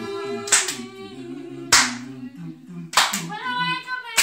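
Small a cappella gospel vocal group singing sustained harmonies without words, with hand claps on the beat, three sharp claps about a second and a quarter apart.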